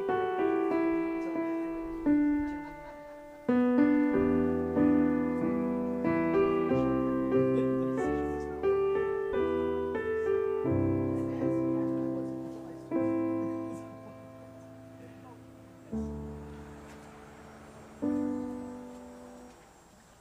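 Keyboard playing a slow piano piece in chords, each chord struck and left to fade. The chords come further apart near the end, and a last chord dies away.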